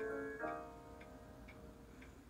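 Grand piano chords played slowly: a chord held over from before, then a new chord struck about half a second in and left to fade. Faint ticks sound about twice a second under it.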